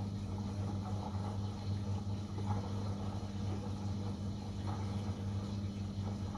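Samsung front-loading washing machine running mid-cycle on a 40° delicates wash, giving out a steady low mechanical hum.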